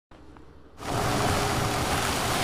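Police car driving along a dirt track: a steady rushing noise of tyres and engine that cuts in suddenly about a second in, after a faint hiss.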